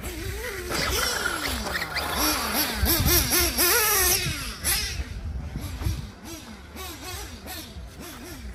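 Nitro RC buggy's Picco P3 TT glow engine revving up and down repeatedly as it drives around the track, its pitch rising and falling with each throttle change. It is loudest and brightest as it passes closest, about three to four seconds in.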